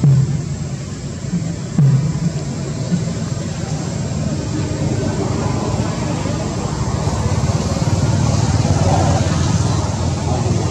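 Low, steady engine-like rumble of a motor vehicle, slowly swelling in level towards the end, with a couple of short knocks in the first two seconds.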